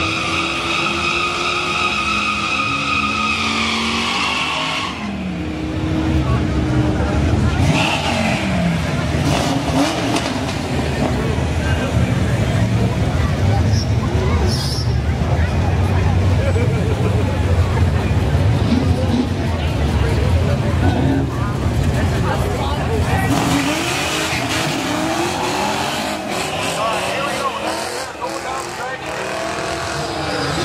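Nitrous Fox-body Mustang drag car: the engine is held at high revs with the tyres spinning in a burnout for the first four seconds or so. Then comes a loud, low rumbling idle while the cars stage. Near the end the engine revs up on the launch and climbs through the gears.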